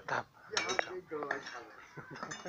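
A hand hammer striking a steel piece: a few sharp metallic clinks, about half a second in and again just before a second in.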